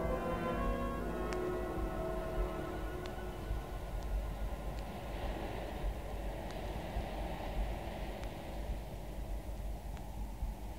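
The last notes of music die away in the first second or so, leaving a steady low rumble and soft hiss with scattered sharp clicks, the hiss swelling and fading again in the second half: the surface noise of a mono vinyl LP.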